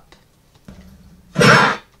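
A single short, loud nonverbal vocal burst from a woman, about one and a half seconds in.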